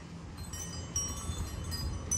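Several high, clear chime tones ring out one after another and hang on, over a low rumble of wind on the microphone.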